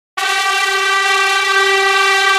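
A single loud, steady horn-like tone with strong overtones, starting abruptly just after the start and held without change.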